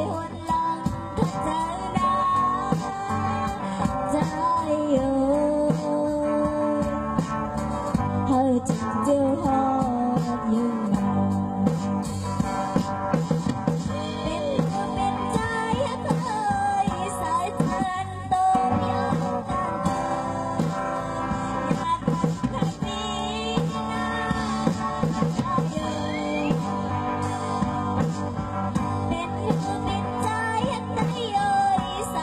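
A woman singing a pop song into a microphone over amplified backing music.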